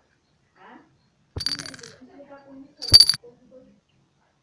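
Two sharp clinks of a coin against a clear drinking glass, each with a brief high ring, about a second and a half apart, the second louder.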